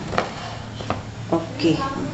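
Hands working soft wheat dough and flour in a large steel plate, with two sharp taps on the metal, one just after the start and one about a second in.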